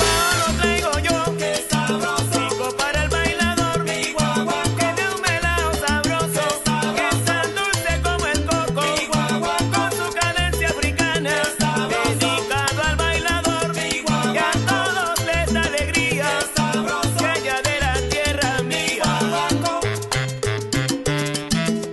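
Salsa recording in guaguancó style: a repeating bass pattern under busy Latin percussion and wavering melodic lines.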